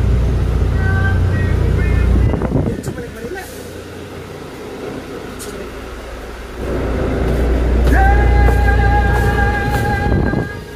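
Bus engine running with a low rumble that drops away about two seconds in and comes back strongly from about the seventh second, with music from the bus's TV underneath. A steady held tone joins over the last two seconds.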